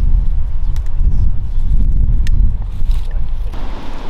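Wind buffeting the camera microphone: a steady, loud low rumble, with a little leaf and brush rustle rising slightly near the end.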